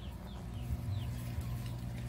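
Faint, short, falling chirps from the chickens over a steady low hum.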